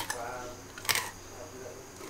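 Kitchen knife slicing cross-cuts into a whole traíra, crunching through the fish's small pin bones as they break. There are two short crisp crunches, one at the start and a sharper one about a second in.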